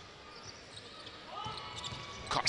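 Faint basketball dribbling on a hardwood court under quiet arena crowd ambience.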